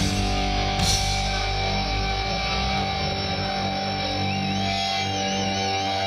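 Live punk-rock band with distorted electric guitars and bass holding sustained notes, and a cymbal crash about a second in. The lowest bass notes die away around the middle while the guitar notes ring on.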